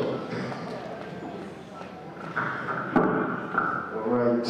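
Scattered clapping from a congregation, thinning out and dying away, with some voices. A single sharp knock comes about three seconds in.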